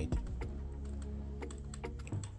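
Computer keyboard keys tapped a few times at an irregular pace, the arrow keys being pressed to nudge a shape's path, over steady background music.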